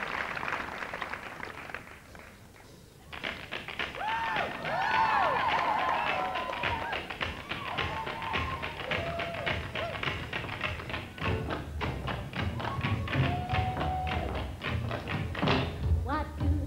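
Audience applause dying away, then about three seconds in, tap shoes striking in a quick, even rhythm over a band playing a melody for the dance number.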